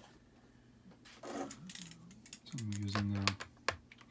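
Light clicks and taps of a screwdriver being handled against the plastic underside of a laptop, mostly in the second half. A man's short hummed "mm" comes about two and a half seconds in and is the loudest sound.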